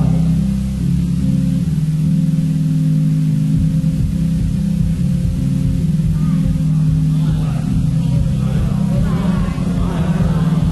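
A percussion ensemble's show music: low, sustained held tones over a deep rumble, with higher, shimmering notes coming in from about seven seconds in.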